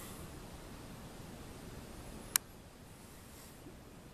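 Faint, steady room noise with a single short, sharp click a little over two seconds in.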